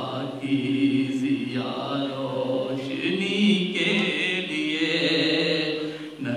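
A man's amplified voice chanting Urdu poetry in a melodic, sung style, holding long notes over the microphone.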